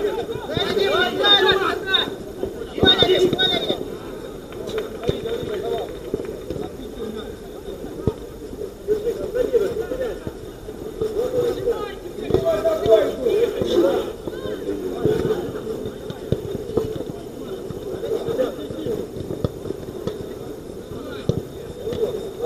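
Football players shouting and calling to each other during play, with a few sharp knocks.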